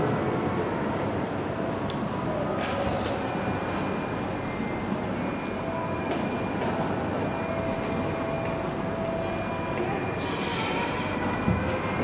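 Steady background noise of a large indoor hall: an even rumble and murmur with a faint hum, and a few faint clicks.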